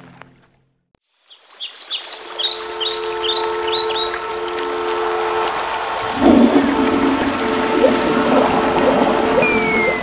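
Birds chirping over a steady drone. About six seconds in, a rush of flushing toilet water starts and runs on with bubbling. A short falling whistle comes near the end.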